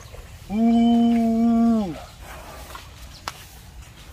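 Asian elephant calf calling: one loud, steady, pitched call lasting about a second and a half, dipping in pitch as it ends.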